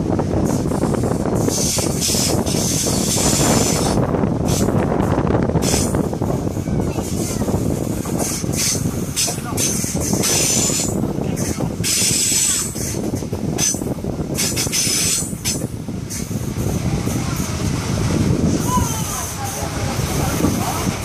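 Train running along the line, heard from an open carriage window: steady rumble of wheels on rail, with repeated gusts of rushing air over the microphone.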